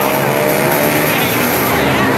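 Racing motorcycle engines passing close by, with an engine note that rises as the bikes accelerate.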